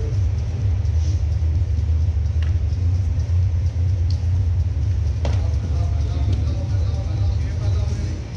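A steady low rumble fills the room throughout, with faint voices in the background and one sharp slap about five seconds in.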